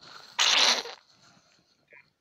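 A person's single sharp burst of breath, sneeze-like, after a faint intake of breath; the hiss lasts about half a second, starting a little under half a second in.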